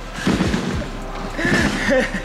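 A man laughing and calling out while bouncing on a trampoline, with a few dull thuds as he lands on the trampoline bed. Background music plays underneath.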